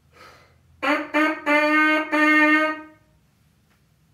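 A brass mouthpiece buzzed on its own, playing a rhythm pattern of four notes on one pitch: two short notes, then two longer ones.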